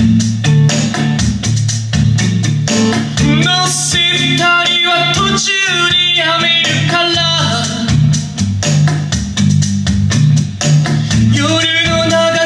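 Man singing in Japanese over a strummed 1968 Gibson J-160E acoustic-electric guitar, the strokes even and steady throughout. The voice comes in about three and a half seconds in, drops out for a few seconds, and comes back near the end.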